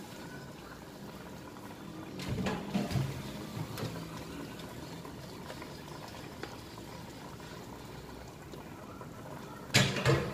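A pot of curry simmering on a gas hob, a steady soft bubbling, with a few clatters of cookware being moved about two to three seconds in and a sharp knock near the end.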